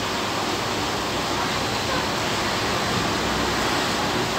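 Air conditioner running: a steady, even rushing noise with no breaks.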